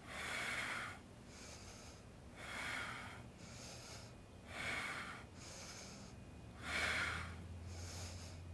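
A woman breathing out hard four times, about once every two seconds, in time with a set of small abdominal crunches.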